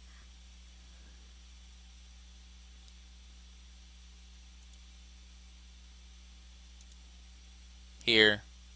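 Low steady electrical hum and faint hiss from the recording setup, with two faint mouse clicks, about five and seven seconds in, as points of a wall are placed on screen.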